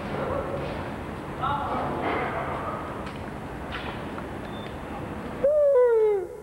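Indistinct background voices, then near the end a loud, drawn-out voice-like call whose pitch slides steadily downward, like a hooted "ooh".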